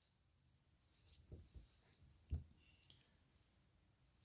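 Near silence with a few faint, short clicks and light handling sounds of a small object in the hands; the loudest click comes a little over two seconds in.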